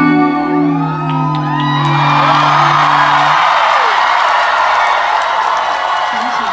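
A live rock band's closing chord on electric guitar and bass rings out and cuts off a little past halfway. From about a second and a half in, the audience cheers and whoops loudly.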